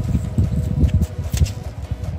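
Leather work gloves rubbing and turning a small, dirt-caked brass rifle cartridge case close to the microphone: an irregular low rustling and scuffing.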